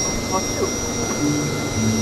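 Steady low hum of a fishing boat's engine running, with a thin, steady high-pitched whine above it.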